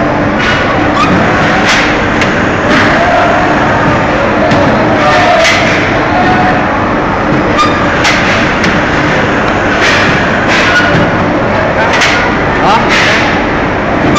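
Workshop din in a porcelain factory: steady machine noise with a low hum, broken by frequent sharp clacks and knocks as ceramic ware is handled, with voices in the background.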